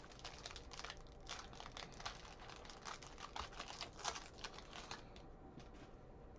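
Foil wrapper of a 2020 Bowman Draft baseball card pack being torn open and crinkled by hand: a quick run of crackles that stops about five seconds in.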